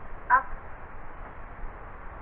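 Steady outdoor background noise, a hiss with a low rumble and no clear events, broken once about a third of a second in by a single short spoken word.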